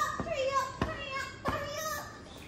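A high-pitched female voice vocalizing in gliding, wordless tones, with three short knocks about two-thirds of a second apart.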